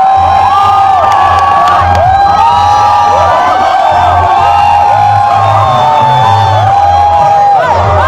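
Loud amplified music with a pulsing bass, and a dense crowd cheering and shouting along over it.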